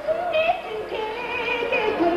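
A woman singing a song with vibrato, accompanied by a Mongolian traditional orchestra of plucked long-necked lutes and reed wind instruments.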